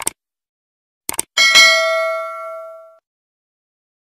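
Subscribe-button animation sound effect: short mouse clicks, then a single notification-bell ding about one and a half seconds in that rings out and fades over about a second and a half.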